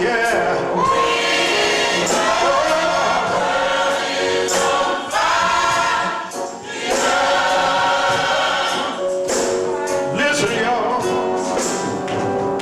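A gospel choir singing together over instrumental accompaniment, with percussion hits running through the music.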